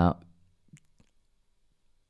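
A man's voice trails off, then a quiet pause at a close microphone with two short, faint clicks in quick succession just under a second in.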